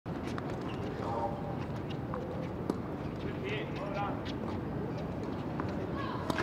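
Tennis balls being struck by racquets and bouncing on a hard court: a scatter of short, sharp pops, the loudest about two and a half seconds in, over a steady murmur of distant voices.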